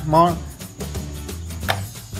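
Soft background music, with the tail of a spoken word at the start and a single sharp click of handling about three-quarters of the way through.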